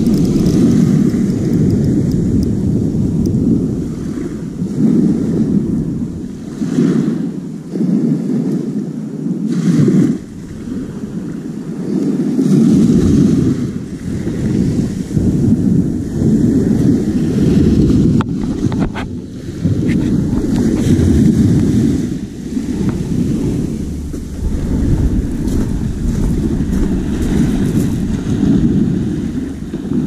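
Sea waves breaking and washing over a shingle beach, mixed with wind buffeting the microphone; the rumbling noise swells and ebbs every few seconds.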